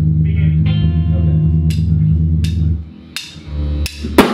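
Electric guitar and bass guitar played loosely in a small room: held low notes with a few separate strummed chords, the playing dropping away about three seconds in.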